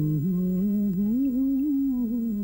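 A man's voice humming a slow melody line in a low register, the opening of a Hindi film song. The pitch steps up about a second in and eases back down near the end.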